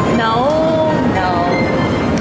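Moving walkway running with a steady low rumble, under synthesized ambient music with long held tones and gliding notes.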